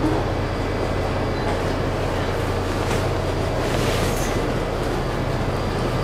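Steady drone of running machinery with a low hum, unchanging in level.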